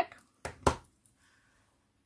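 Two sharp clicks about half a second in, the second louder, as craft supplies are handled on the tabletop.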